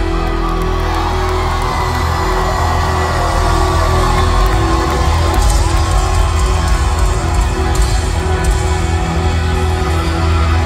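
Live country-rock band playing an instrumental passage at full volume: electric guitar over drums and heavy bass, heard from the audience through the concert's PA.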